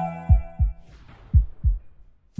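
Outro logo sound design: a heartbeat-style double thump, heard twice about a second apart, while a held chime-like chord fades out, with a faint whoosh between the beats.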